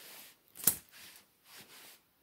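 Handling noise: soft rustling with one sharp click about two-thirds of a second in.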